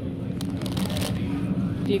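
Supermarket background with a steady low hum throughout, and a few faint clicks and handling noises from shopping. A short spoken word comes at the very end.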